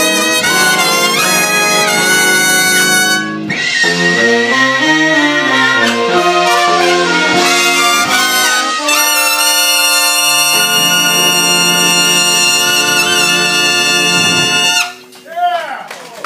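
Jazz big band with saxophones, trombones and a featured trumpet playing the closing bars of a ballad, the lines moving for the first half and then settling on one long held full-band chord for about six seconds. The chord cuts off about a second before the end, leaving only quieter scattered sounds.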